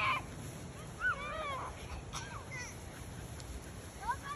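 Children's distant shouts across an open field: a few short, high calls with rising-and-falling pitch, about a second in and again about two seconds in, over wind noise on the microphone.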